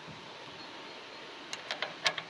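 Steel locking pin tapping and clicking against a steering-column lock collar as it is lined up with the hole, a few light sharp clicks near the end over faint outdoor background.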